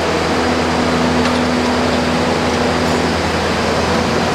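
Steady mechanical noise of large barn ventilation fans running together with the Mensch sand bedding truck's engine, with a steady hum that holds for about three seconds.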